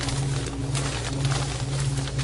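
Steady hum of a walk-in freezer's overhead refrigeration fan units, with faint rustling of the plastic bags around the ice cores as they are handled on the shelves.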